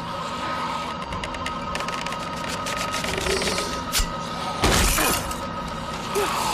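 Tense drama score with a steady high drone, under a run of quick faint ticks. A sharp hit comes about four seconds in, and a louder crashing impact follows just before five seconds.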